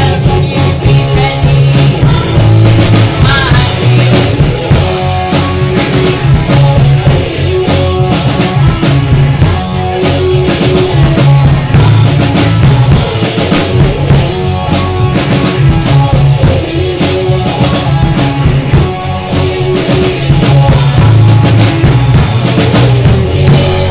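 Rock band playing live: drum kit, electric guitars and bass guitar.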